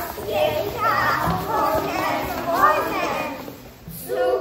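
A group of young children reciting a verse together in unison, many voices speaking as one chorus, with a short break near the end.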